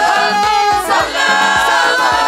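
Gospel worship team singing together in harmony through microphones, several voices at once, over a steady low beat.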